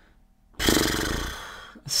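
A woman sighing: one long, breathy exhale that starts about half a second in and fades away over a second.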